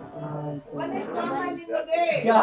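Only speech: voices talking, with no other sound standing out.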